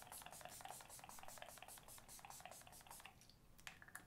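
Faint, quick, even run of spritzes from a Skindinavia oil-control primer mist spray bottle, about five a second, stopping about three seconds in.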